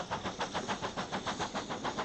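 Steam locomotive working hard, its exhaust beating in a rapid, even rhythm.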